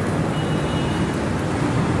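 Steady background noise, a low rumble with hiss over it, with no speech and no distinct events.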